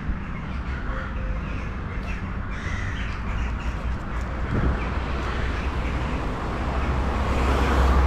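Crows cawing in scattered short calls over a steady low rumble of street traffic that grows louder near the end.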